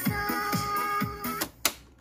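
Music playing from a Sony CFS-715S boombox's speakers, cutting off suddenly about one and a half seconds in, followed by a single sharp mechanical click.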